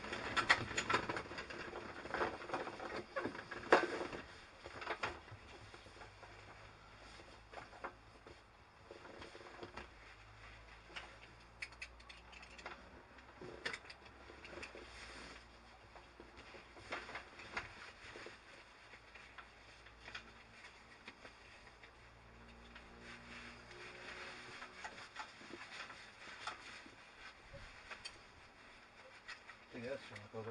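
Handling noises in a light aircraft's cockpit: scattered clicks and rustling, thickest and loudest in the first four seconds, then sparse.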